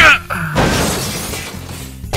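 A cartoon crash sound effect with a shattering quality, coming in about half a second in and slowly dying away, over background music.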